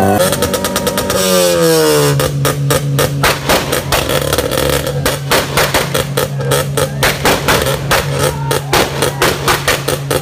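Modified Honda car exhausts revving: the revs fall away over the first two seconds, then the engine is held on the throttle while the exhaust crackles with rapid popping, its loudness pulsing several times a second.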